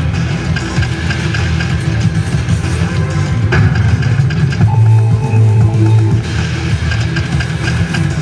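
An Ainsworth Ultimate Livewire Firestorm video slot machine playing its electronic spin music and reel-stop clicks as its reels are spun over and over, over steady casino noise. A short held tone sounds about five seconds in.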